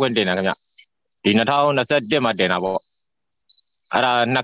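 A man speaking Burmese in two short stretches of talk, with silences of about half a second to a second between them.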